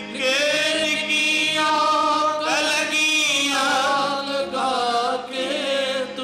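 Male voices singing a Punjabi Sikh devotional song through microphones, in long drawn-out melodic phrases with wavering ornaments, over a steady held tone underneath.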